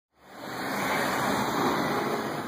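Steady road traffic noise, an even rushing wash that fades in over the first half second and then holds.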